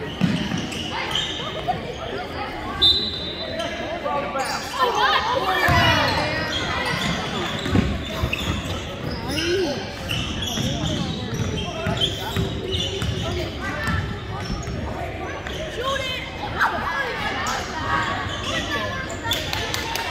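Basketball dribbled on a hardwood gym floor during play, with voices of players and spectators echoing in the large hall.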